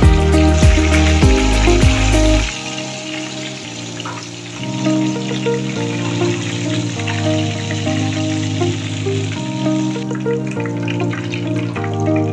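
Food frying in shallow oil in a pan, a steady sizzle that dies away near the end, under background music.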